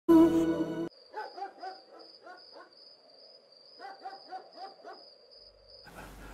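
A brief loud music chord, then two runs of short animal calls, like distant barks, over a steady high chirring tone.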